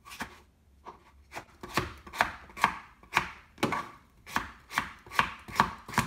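Kitchen knife chopping cucumber on a plastic cutting board: about a dozen sharp chops in a steady rhythm of two to three a second, after a short pause near the start.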